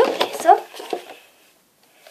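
A girl's voice in a short wordless exclamation about half a second long, sliding in pitch, at the start.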